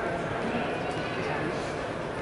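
Basketball bounced on the hardwood court by a free-throw shooter in his pre-shot routine, over the steady murmur of the arena crowd.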